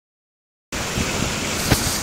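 A steady rushing noise, such as wind or running water, starts abruptly less than a second in, with one short knock a little later.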